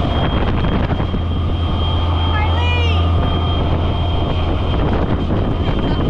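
Swamp buggy running under way with a steady low engine drone and wind on the microphone; a short voice cuts in about two and a half seconds in.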